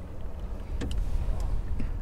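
A landing net being set out in an aluminum boat: a few light knocks and clicks, starting a little under a second in, over a steady low rumble.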